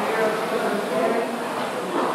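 Indistinct voices in the room over the steady whir of air rowing machines, their fan flywheels swelling with each stroke about every two seconds.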